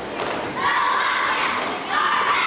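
A squad of young cheerleaders shouting a cheer together, one long held shout starting about half a second in and the next starting near the end, after a few sharp hits at the start.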